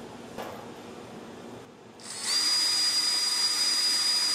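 Cordless drill spinning up about two seconds in and then running at a steady high whine, used on a small 3D-printed shaft coupler part. Before it, faint handling taps on the workbench.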